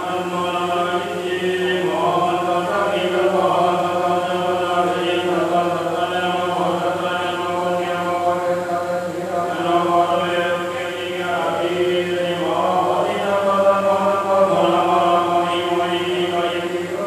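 A group of voices chanting Buddhist prayers together in a continuous, steady chant.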